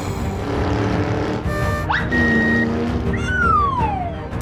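Cartoon soundtrack music with whistle sound effects: a quick upward whistle about two seconds in, then a brief high held tone, and near the end a long falling whistle.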